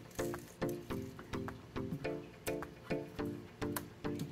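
Background instrumental music: a steady, repeating line of short pitched notes, about two or three a second.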